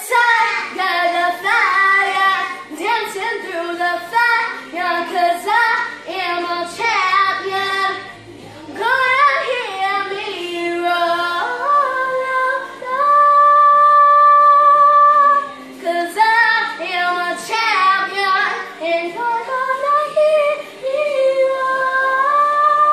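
A boy singing unaccompanied in a full, showy voice, holding one long note for a couple of seconds about halfway through.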